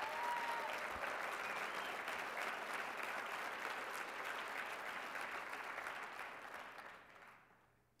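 Audience applauding, steady for about seven seconds, then dying away near the end.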